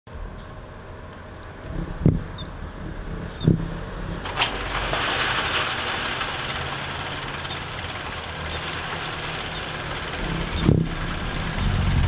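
Automatic sliding gate's warning alarm giving a steady high-pitched beep, starting about a second and a half in and broken twice briefly near the start, over a low rumble with a few knocks as the gate moves.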